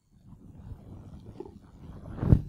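Low rumbling and rustling noise picked up by the microphone, starting a moment in after near silence, with a few scattered soft knocks.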